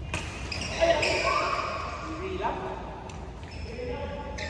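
Badminton play on an indoor court: a sharp crack of a racket striking the shuttlecock, then squeaks of rubber-soled court shoes on the floor, echoing in the hall.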